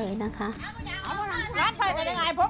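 Speech over background music: a woman's voice finishes a sentence in the first half-second, then high-pitched voices take over.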